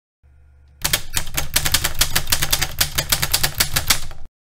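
Typewriter clacking sound effect under the intro title: rapid keystrokes, about eight a second, over a low hum. The clacking starts just under a second in.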